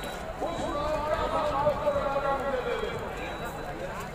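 A voice over a public-address system speaking to a large outdoor crowd, with crowd noise beneath it.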